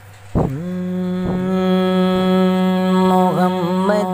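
A man's voice opening a naat with one long held, wordless sung note. It slides down into the note about half a second in and wavers near the end, over a faint low steady hum.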